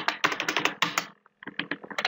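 Computer keyboard typing: a quick run of keystrokes through the first second, then a few more near the end.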